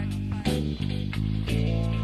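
Country rock band playing an instrumental stretch between sung lines: guitar and bass guitar sustaining notes, with a few drum hits.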